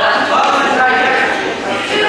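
Several voices yelling in long, drawn-out calls that overlap.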